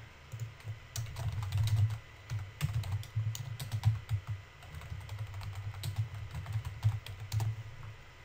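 Typing on a computer keyboard: irregular keystrokes in quick runs with short pauses, stopping shortly before the end.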